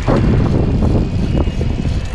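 VanMoof S4 e-bike being ridden: a steady rushing noise from the pedalling drivetrain and the chain running, mixed with wind on the microphone. It is the running noise the rider hears from this bike throughout the ride.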